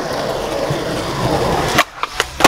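Skateboard wheels rolling steadily over concrete, then a single sharp pop near the end as the tail is snapped down for an ollie.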